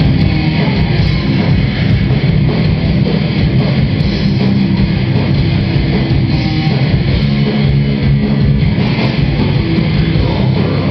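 Death metal band playing live: heavily distorted electric guitars, bass guitar and drum kit, loud and dense, in an instrumental passage with no vocals.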